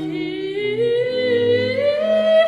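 Baroque soprano aria: a boy soprano holds one long sung note that slowly climbs in pitch, over period-instrument strings and a continuo bass line stepping through notes beneath it.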